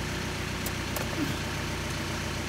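Engine idling steadily, with a couple of faint clicks a little under a second in.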